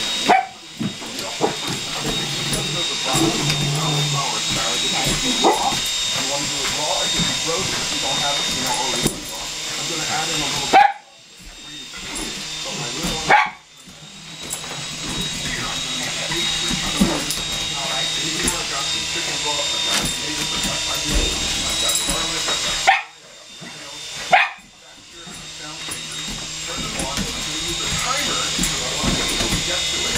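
A Shetland sheepdog barking over the steady high whine of a small electric toy helicopter. The whole sound drops out for a moment about four times.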